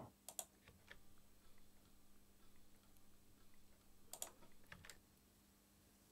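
Near silence: quiet room tone with a faint steady hum and a few faint clicks of computer input, a pair near the start and another pair around four seconds in.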